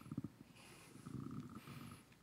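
Faint, low breathy and mouth noises picked up by a handheld microphone held close to the mouth during a pause in speech, in short low pulses near the start and again from about a second in.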